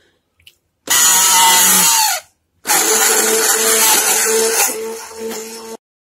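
Electric hand-held immersion (stick) blender whisking cake batter in a steel bowl, run in two bursts: the first starts about a second in and winds down with a falling pitch, the second starts just under three seconds in and stops abruptly near the end.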